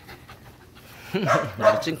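A quiet moment, then a woman laughing softly about a second in.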